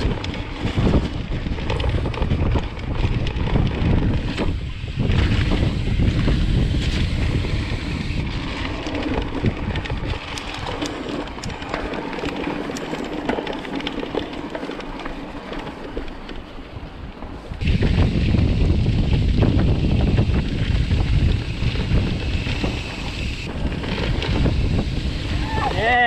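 Haibike electric mountain bike riding fast over a dirt singletrack: tyre noise and small rattles from the bike under heavy wind buffeting on the microphone. It eases off in the middle for several seconds and comes back suddenly louder about two-thirds of the way through.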